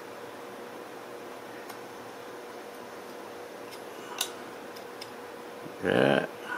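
A carving knife pushed by the thumb, cutting small chips from a wooden rifle stock: a few faint sharp clicks, the clearest about four seconds in, over a steady low room hum.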